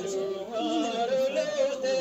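Several voices singing a slow song in long, drawn-out held notes that glide gently between pitches.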